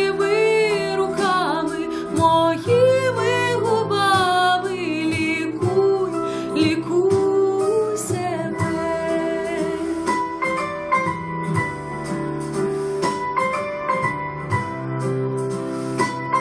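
A woman singing a sustained, wavering vocal line with vibrato over an instrumental backing track. After roughly five seconds the voice fades back and the instrumental accompaniment carries on steadily.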